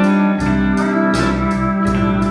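Live country band playing an instrumental passage between sung lines: electric guitars and bass over a steady beat of about three strikes a second.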